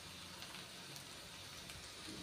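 Taro root slices frying in shallow oil in a pan, the oil sizzling faintly with a few small pops.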